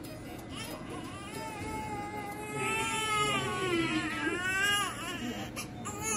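Newborn baby crying: one long cry builds from about a second in, followed by a shorter rising-and-falling cry near the end.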